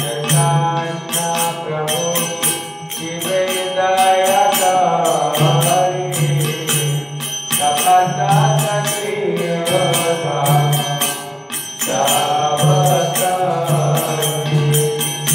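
Devotional chanting (kirtan): a sung melody over a low pulsing accompaniment, with small hand cymbals (kartals) struck in a steady, regular beat.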